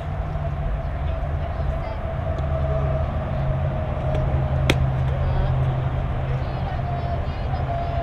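A softball bat strikes a pitched ball once, a single sharp crack about halfway through, over a steady low drone.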